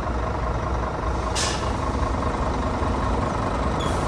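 Scania P 320 truck's nine-litre five-cylinder diesel idling steadily, with one short hiss of compressed air about a second and a half in as the pneumatic suspension adjusts after its control is pressed.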